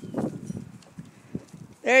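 Soft rustling and a few scattered light taps as a puppy walks over dry grass with a cardboard box stuck over its head.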